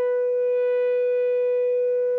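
Electric guitar (Ibanez RG-370DX with Seymour Duncan Distortion Mayhem pickups) played through a Wampler Tumnus Deluxe overdrive set for high gain. It holds one long high note, about a B, that sustains at an even level without fading.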